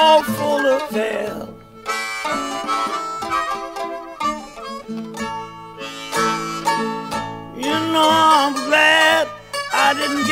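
Acoustic country-blues instrumental break with no singing: a harmonica plays bent, wavering notes at the start and again near the end, with acoustic guitar and mandolin picking in between.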